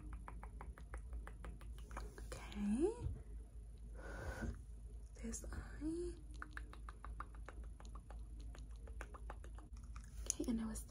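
Rapid light tapping clicks, about six a second, from a makeup brush and long acrylic nails handled close to the microphone. Two short hummed 'mm' sounds rise in pitch about three and six seconds in, and a brief soft whoosh comes between them.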